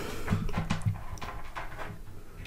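Faint, irregular light taps and knocks, with soft rustling, from a hand picking up and handling a small USB cable.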